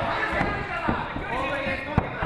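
Bare feet thudding on the ring canvas as two MMA fighters move and trade strikes, with a sharp smack near the end, over voices in the hall.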